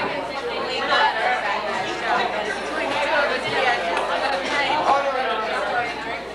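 Chatter of several people talking over one another, a steady murmur of overlapping conversation with no single voice standing out.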